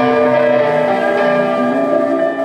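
Live rock band playing through a PA, with electric guitars holding sustained, ringing chords.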